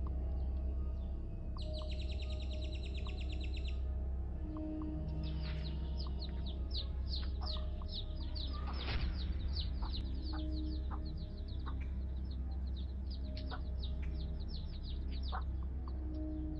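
Birds chirping over soft background music with long held low notes: a rapid high trill about two seconds in, then a long run of quick falling chirps from about five seconds on.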